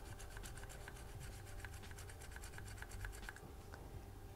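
Fibreglass scratch pen scrubbing back and forth over corroded copper traces on a circuit board, faint rapid scratchy strokes that stop a little over three seconds in. It is scraping off oxide and lifted coating to bare the copper underneath.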